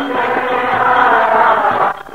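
Sikh kirtan: voices singing a devotional hymn in a chant-like melody with musical accompaniment, breaking off briefly near the end.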